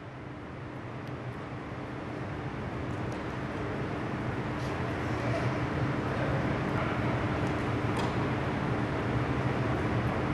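Steady background noise of an indoor sports hall with a low constant hum, slowly getting louder, and a few faint taps from the players' feet.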